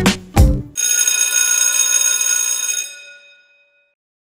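Short logo music sting: two heavy hits, then a bright, bell-like chord that rings on and fades out about three and a half seconds in.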